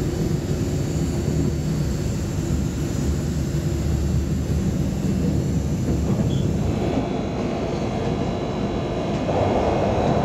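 Double-decker commuter train running, heard from inside the carriage: a steady low rumble, with a louder rushing noise coming in near the end.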